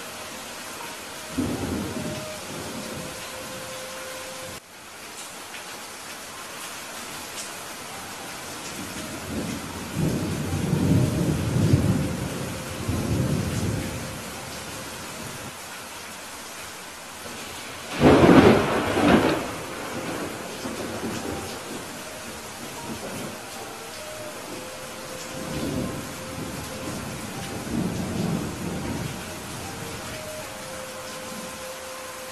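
Steady rain hiss under rolling thunder: a short rumble about a second and a half in, a longer rolling rumble around the middle, a loud sharp thunderclap a little past halfway, and lighter rumbles near the end.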